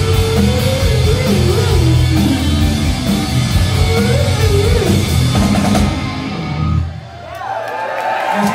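Live rock band with electric guitars, bass and drum kit playing loudly. The cymbals drop out about six seconds in and the song ends on a held note a second later, followed by crowd noise rising near the end.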